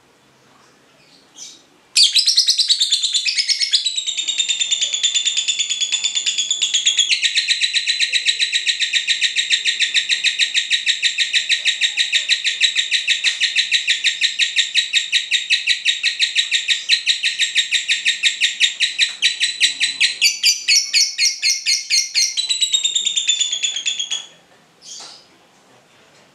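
Lovebird in full 'ngekek': a loud, fast, unbroken chattering trill of many short high notes a second. It starts about two seconds in and goes on without a break to the end, changing its rhythm a few times along the way.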